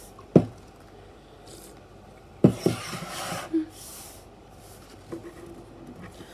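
A sharp knock as a phone is set down on a table, then about two and a half seconds in another knock and a second or so of sipping from a drinks can, with a short hum after it.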